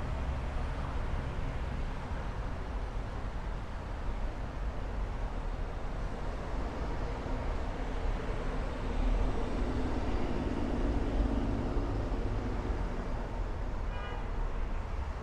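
City street traffic noise, a steady rumble of passing vehicles, with a motor vehicle growing louder and passing about nine to twelve seconds in.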